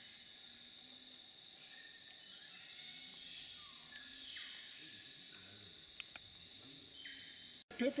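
Rainforest insects droning steadily at a high pitch, swelling a little in the middle. A man starts speaking right at the end.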